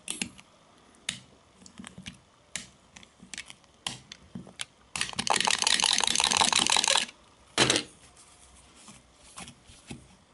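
Sharp utility-knife blade scraped and tapped against a smartphone's glass screen in a scratch test: scattered short scratches and clicks, then about two seconds of fast back-and-forth scraping, and one more short scrape a moment later.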